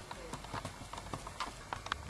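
A string of light, irregular clicks and taps, coming louder and closer together near the end.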